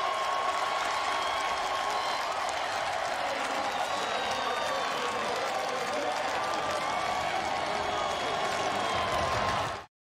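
Stadium crowd noise after a touchdown: steady cheering and applause with indistinct voices mixed in, which cuts off abruptly just before the end.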